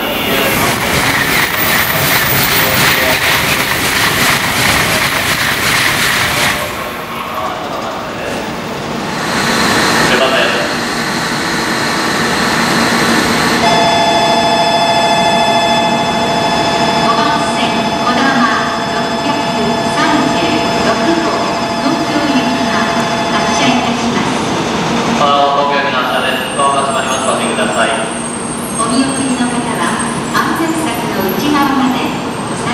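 Shinkansen trains at a station. A train on the next track makes a loud rushing noise in the first few seconds. A 700-series train then pulls in at the platform, with a steady two-pitch electronic tone lasting about ten seconds in the middle and snatches of voices or announcements.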